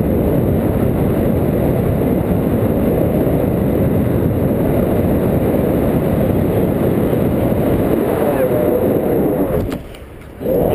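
Airflow of a paraglider in flight buffeting a handheld action camera's microphone: a loud, steady, low rushing. The rushing drops away abruptly just before the end.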